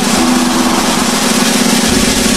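Basketball arena crowd making a loud, steady roar of cheering and screaming while a half-court shot is in the air.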